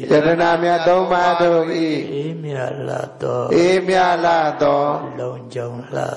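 A Buddhist monk's voice chanting in a melodic recitation, with long held and gliding tones and a few short pauses for breath.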